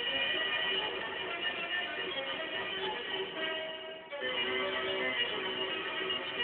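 Music from a record on a Philips AG9102 record player, heard through the loudspeaker of a 1930s Philips Symphonie 750 A tube radio. The music dips briefly about four seconds in, then carries on.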